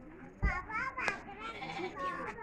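Sheep bleating while being handled, with a hard thump about half a second in and men's voices around it.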